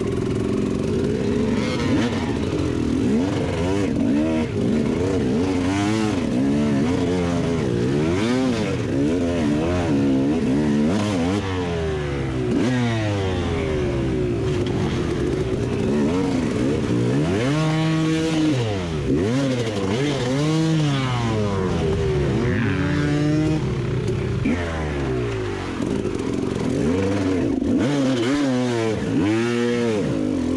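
KTM two-stroke enduro motorcycle engine revving up and down constantly under the rider's throttle as it picks through the trail, with sharp throttle blips about eighteen seconds in and again near the end.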